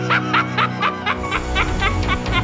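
The Joker's laugh, a man's cackle in short rapid bursts about four or five a second, over a horror-theme music mix with sustained synth tones. About a second in, a heavy bass beat comes in under the laughter.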